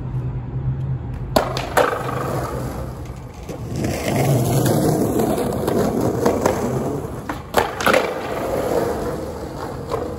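Skateboard on concrete: two sharp clacks of the board about a second and a half in, then wheels rolling over rough concrete with two more clacks near the end.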